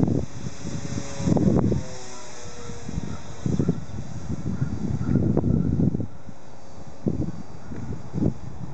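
Wind buffeting the microphone in irregular gusts, over the faint engine drone of a distant P-51 Mustang propeller plane, whose tone falls slightly in pitch in the first few seconds.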